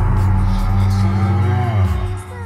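A dinosaur call sound effect for the duck-billed hadrosaur: one long, low, moo-like bellow that dips in pitch and stops just before the end.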